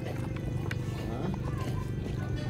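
Restaurant background sound: faint voices over a steady low hum, with a couple of light clicks.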